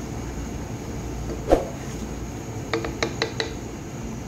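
A metal spoon knocking against a cooking pot while froth is skimmed off boiling dal: one sharp knock, then a quick run of four light, ringing clinks near the end.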